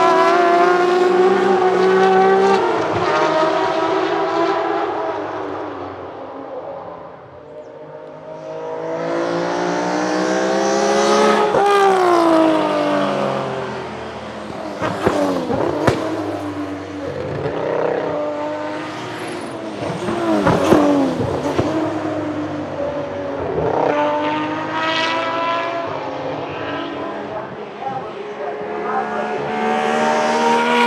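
BMW 3.0 CSL Group 2 race cars' 3.2-litre straight-six engines at racing speed: the note rises through the gears and falls as the cars pass and brake, several times over. Sharp exhaust cracks come in the middle stretch, as the cars lift off and shift down.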